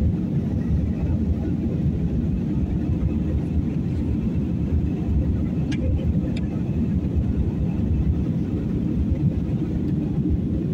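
Steady low rumble of jet engines and rushing air heard inside the cabin of an Airbus A320-family airliner in flight. Two faint clicks come about six seconds in.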